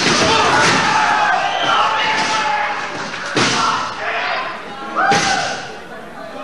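Wrestlers hitting the ring, with two sharp thuds about three and a half and five seconds in, amid shouting voices.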